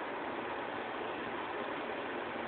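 Steady background hiss, even and unchanging, with no rhythm or distinct tone.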